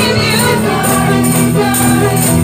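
Upbeat gospel praise music with voices singing together and tambourines jingling on the beat, about two strikes a second.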